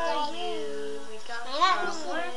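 A young child singing a made-up, wordless tune: held notes that slide up and down, with a louder high swoop about a second and a half in.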